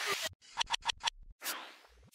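Electronic logo sting: a whoosh, a quick run of short scratch-like stutters, then a second whoosh that fades away.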